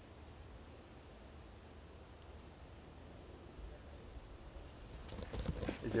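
Faint insect calling: a high, evenly pulsing trill of about four to five pulses a second that stops shortly before the end, over a low steady rumble.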